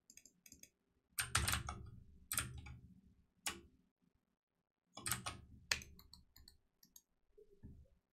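Computer keyboard keys clicking in short irregular bursts, a few strokes heavier than the rest.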